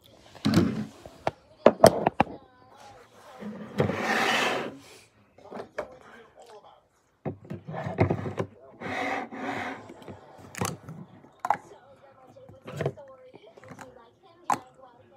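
Body-mist spray bottles knocking as they are picked up and set down on a tabletop, several sharp knocks with handling and rustling between them.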